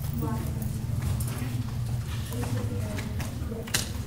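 Faint, indistinct chatter of voices in a hard-walled room over a steady low hum, with a few short knocks, one of the clearest near the end.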